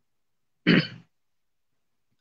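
A person clearing their throat once, a short, sharp burst a little over half a second in that fades within half a second.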